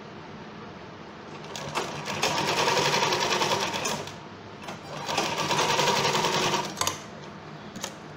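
Sewing machine stitching through fabric layers in two runs, the first starting about a second and a half in and the second following a brief pause, stopping shortly before the end.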